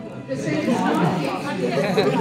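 Several people talking at once in a large room, overlapping indistinct chatter with no single voice standing out.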